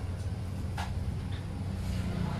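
Coconut milk pouring from a plastic bag into a wok of pork pieces, with a brief splash just under a second in, over a steady low rumble.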